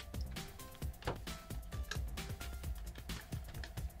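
Quiet background music, with soft clicks and rubbing as the rubber protective holster is pulled off a Hioki DT4215 digital multimeter by hand.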